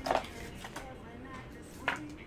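Plastic card sleeve and holder handled by gloved hands: a sharp tap at the start, a few faint clicks, and another tap near the end as a trading card is set down on the table.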